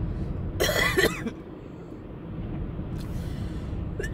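A woman coughing, a brief fit of two coughs a little over half a second in, over the low rumble of a car's cabin. She takes the coughing as a sign that she is coming down with something.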